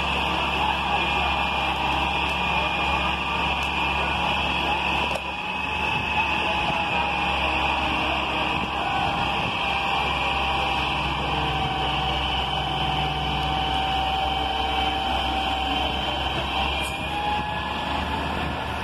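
Hitachi EX200 hydraulic excavator's diesel engine running steadily while its boom is worked, lowering the raised bucket from rooftop height.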